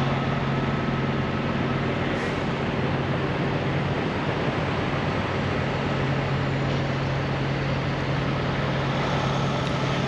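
Steady, even hum of idling diesel semi trucks, a constant low drone with no change.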